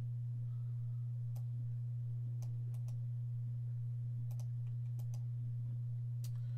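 Scattered clicks of a computer mouse and keyboard, about nine, some in quick pairs, as a spreadsheet is formatted. A steady low electrical hum runs under them and is the loudest sound.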